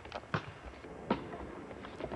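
A basketball striking hard surfaces: two short, sharp knocks about three-quarters of a second apart.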